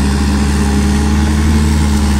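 Massey Ferguson tractor's diesel engine running steadily under load, driving a tractor-mounted forage harvester that chops sorghum and blows it into the trailer; a constant low engine drone under an even rushing noise of the cutting and blowing.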